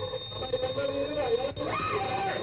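Indistinct voices of several people talking, with one voice rising in pitch near the end, over a steady high thin whine.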